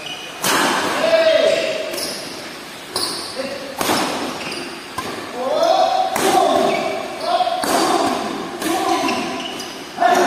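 Badminton rally in an echoing hall: rackets strike the shuttlecock about seven times, a sharp smack roughly every second, each ringing briefly in the room.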